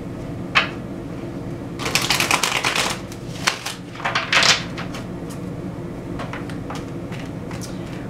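A deck of tarot cards being shuffled by hand. There is a run of rapid card flicks about two seconds in, a few taps, and a shorter run of flicks around four and a half seconds, over a steady low hum.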